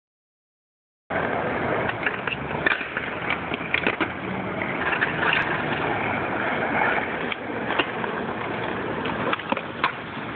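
Skateboards rolling on asphalt with scattered sharp clacks of boards hitting the ground, over a steady rush of outdoor noise. The sound starts about a second in.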